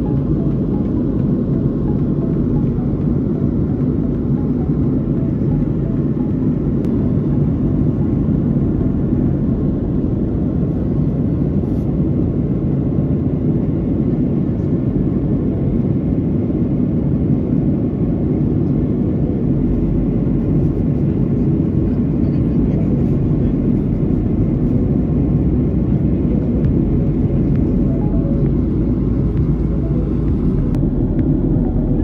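Steady airliner cabin noise in cruise flight: a constant low rumble of jet engines and airflow heard inside the cabin, unchanging throughout.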